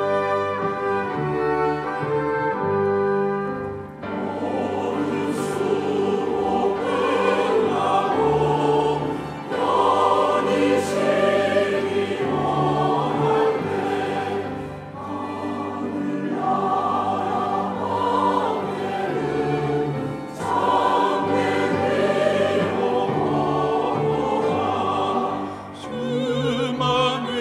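Church choir singing a hymn in Korean, accompanied by a small orchestra of strings and brass. The instruments play alone for the first few seconds and the choir comes in about four seconds in, singing in phrases with short breaths between them.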